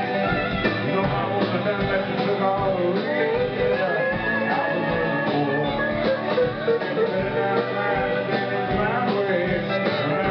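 Live band playing outlaw country rock: electric guitar lines with bending notes over a steady drum beat.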